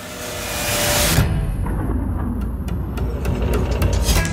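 Trailer sound design: a rising swell of noise that builds for about a second into a deep, sustained low rumble, with a few faint ticks later on.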